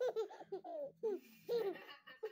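A woman and a baby laughing together in repeated short bursts.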